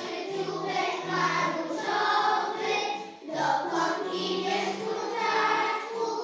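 A group of young children singing a song together in unison, over steady low instrumental accompaniment.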